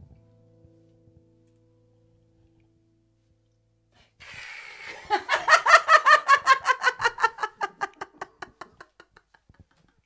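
The last keyboard notes die away, and after a few seconds of quiet a woman laughs loudly and high into a handheld microphone: a quick run of ha-ha pulses, about four or five a second, that slowly fades over some five seconds.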